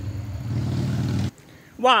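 A steady low rumble that cuts off abruptly a little over a second in, followed by a woman saying "wow".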